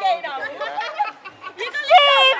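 Several voices talking and calling out over one another in excited group chatter.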